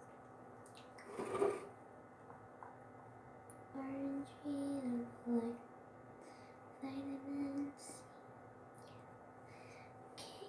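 A young girl's voice in a few short, quiet pitched phrases, too indistinct to make out as words. There is a brief rustle of handling about a second in.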